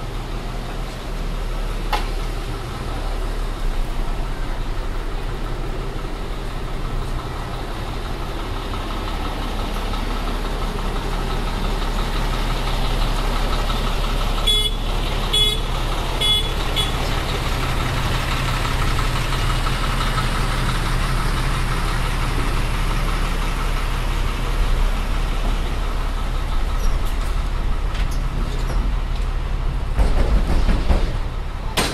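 Tractor-trailer truck's engine running close by, a steady low rumble that grows louder toward the end. A few short high-pitched beeps sound about halfway through.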